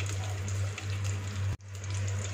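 Chopped nuts and dried fruit frying in a little cooking oil in a nonstick pan, with a steady sizzle over a low hum. The sound drops out briefly about one and a half seconds in.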